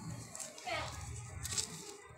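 Children's voices in the background, with one high call that falls in pitch about half a second in.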